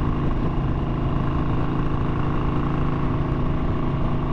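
1991 Harley-Davidson FXLR's Evolution V-twin running steadily at highway cruising speed, with wind and road noise over it.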